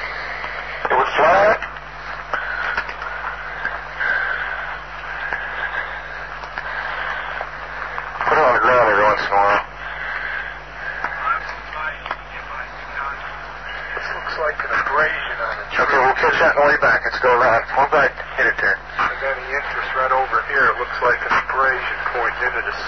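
Men's voices talking indistinctly on a low-fidelity tape recording, loudest in bursts about 8 seconds in and again from about 14 seconds on. Under the speech run a steady low hum and tape hiss.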